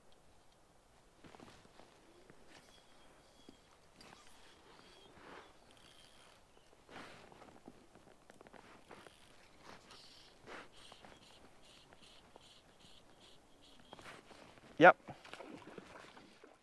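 Faint rustling and small clicks of fly line and rod being handled on a stream bank, with faint high chirps repeating through the middle. Just before the end comes a short, loud vocal exclamation as a fish takes the fly.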